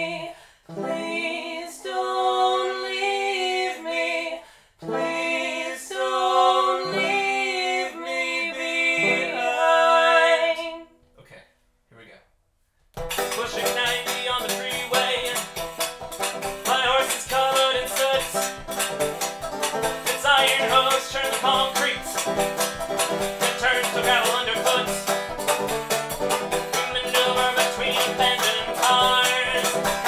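Unaccompanied singing of a slow refrain, which stops about eleven seconds in. After a short silence a banjo and a washboard start playing together with a steady rhythm.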